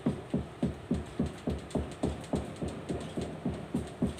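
A steady, even rhythm of short low thumps, a little under four a second, each dropping quickly in pitch.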